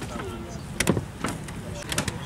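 Wet clay being slapped and patted by hand on a plastic-covered table: a few sharp, short slaps in the second half, over background chatter.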